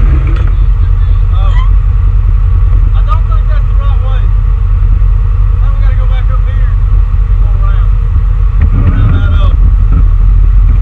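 Polaris General side-by-side's engine running steadily on a trail ride, heard on board, with people talking over it several times.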